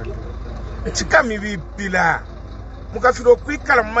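A man speaking in short phrases, over a steady low background rumble.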